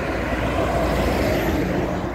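A Hino box truck passing close by on the highway: engine and tyre noise swelling to its loudest about a second in, then easing as it goes past.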